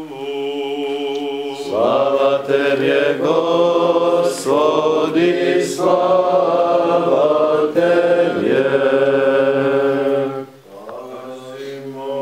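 Orthodox liturgical chant in men's voices. A single voice holds a steady reciting note, then a louder, fuller melodic phrase runs from about two seconds in to about ten seconds, and the quieter reciting note returns near the end.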